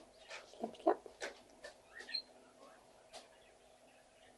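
Pet rabbits licking and slurping: a run of short, irregular wet clicks over the first three seconds, the loudest about a second in, then fading.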